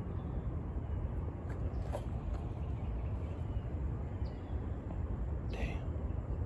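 Steady low outdoor background rumble, with a faint click about two seconds in.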